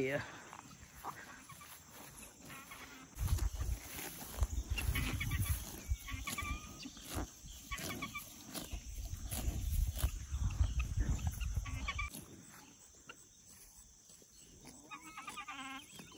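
A cow grazing at close range, tearing grass in irregular bites over a low rumble, with a few short clucks from hens.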